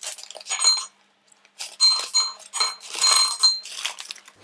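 Whole almonds poured into a small white ceramic bowl, clicking and clinking against it, with the bowl ringing after the hits. A short burst comes about half a second in, then a pause, then a longer stream of clinks from about two seconds in.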